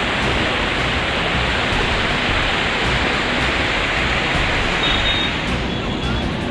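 Rushing floodwater: a loud, steady wash of water noise with no break.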